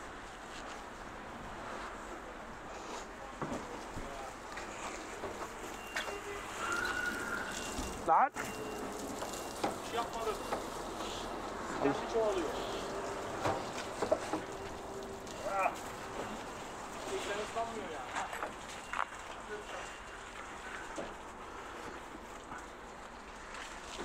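Long-handled wash brush scrubbing soapy truck bodywork: a steady scrubbing hiss, with a single sharp click about eight seconds in.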